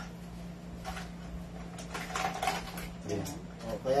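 Faint clicks and light clatter of small hard objects being handled and moved on a shop counter, over a steady low hum. A man's voice starts near the end.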